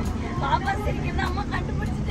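Steady low engine and road rumble inside a moving passenger vehicle, with people's voices over it.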